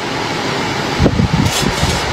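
Steady background noise, with a few low thumps a little past one second in.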